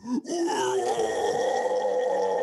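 A man's long, rough, guttural vocal noise. It starts about a quarter second in and is held at one steady pitch.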